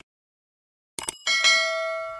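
Quick clicks about a second in, then a bright bell ding that rings on and fades: the notification-bell sound effect of a subscribe animation.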